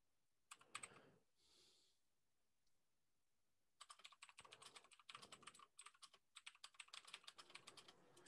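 Faint typing on a computer keyboard: a few keystrokes about half a second in, then a steady run of rapid keystrokes from about four seconds in.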